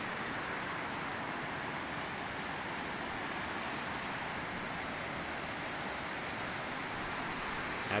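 Steady rush of a creek running over small rock cascades, an even watery hiss with no change throughout.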